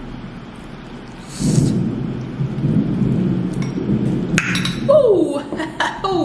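Steady rain with a long roll of thunder that swells about a second and a half in and keeps rumbling. Near the end there is a sharp click, then two short falling groans from a woman reacting to the burn of very spicy noodles.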